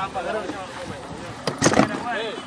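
Indistinct voices talking. About one and a half seconds in comes a loud, brief rush of handling noise as the handheld camera's microphone is knocked or brushed.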